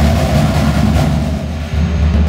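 Marching drumline playing a fast percussion passage: dense rapid strokes with heavy bass drums underneath.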